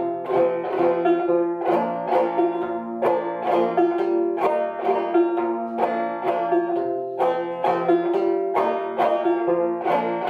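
1888 Luscomb five-string banjo, tuned about two frets below gCGCD, played in a three-count waltz rhythm: the thumb picks out the melody while the fingers brush down across the strings, in a steady run of plucked and strummed notes.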